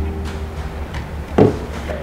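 A single short knock about one and a half seconds in, over a low steady hum.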